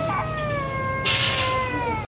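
A cat yowling: one long drawn-out call that rises at its start, then holds and slowly sinks in pitch. A hiss joins it about a second in.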